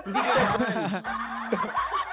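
People laughing and chuckling together in reaction to a joke.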